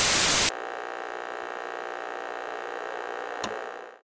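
A loud burst of static lasting about half a second, then a steady electrical hum with one sharp crackle about three and a half seconds in, fading out at the end. This is the sound design of an outro logo sting.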